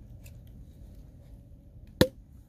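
Faint small clicks and rustles from a champagne bottle being handled as its foil and wire cage are worked off the cork, over a low wind rumble.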